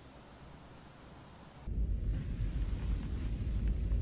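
Quiet room tone, then less than two seconds in an abrupt cut to a louder, steady low rumble with a faint hiss over it: the background hum of a grainy old TV clip of a starship bridge.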